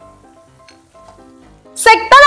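Tofu simmering in sauce in a frying pan, sizzling faintly as it is stirred with a spatula, under soft background music of short melodic notes. Near the end a loud, high-pitched voice cuts in.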